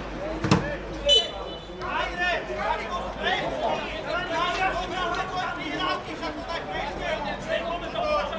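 A sharp thud about half a second in, then a short, high referee's whistle that stops play for a foul. After that, several voices keep talking and calling out across the pitch.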